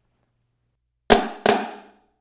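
Marching snare drum struck with two accented flams, left then right, about a third of a second apart, each ringing out briefly. The grace notes are played from a low stick height.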